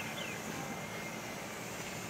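Steady outdoor background noise: an even hum and rush with no distinct events, typical of distant traffic or an aircraft far off.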